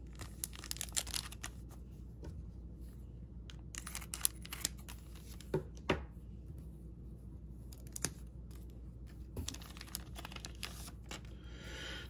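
Trading-card pack wrapper being handled and torn open: quiet, intermittent crinkling and rustling with a few sharper crackles.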